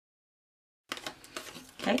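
Dead silence, then about a second in a sharp click followed by faint rustling and clicking of cardstock being handled and snipped with paper scissors.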